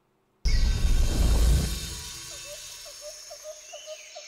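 Logo-sting sound design: a sudden deep boom about half a second in that fades over a second or so, giving way to a forest ambience of steady high hiss and a short chirp repeating about three times a second.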